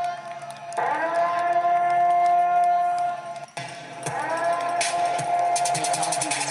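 Air-raid-style siren wailing: its pitch sweeps up and holds, cuts out about three and a half seconds in, then sweeps up and holds again. A music track with a beat comes in near the end.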